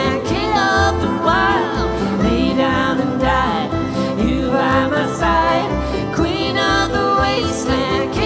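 Live acoustic string band playing a country-bluegrass song: fiddle, upright bass, acoustic guitar and a small plucked string instrument, with a woman's voice singing over a steady bass pulse.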